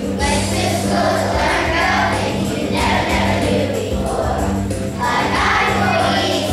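Children's choir singing over a steady instrumental accompaniment, the voices coming in together right at the start.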